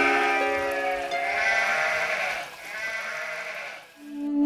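Sheep bleating three times in long, wavering bleats over soft background music.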